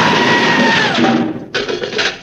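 House explosion: a loud rush of blast and debris noise, with a held musical note over it that slides down and stops about a second in, then a brief burst of music.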